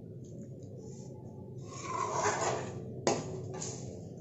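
Steel spoon stirring thick sambar in a metal kadhai: a scraping stretch of about a second midway, then a sharp clink of the spoon against the pan, over a steady low hum.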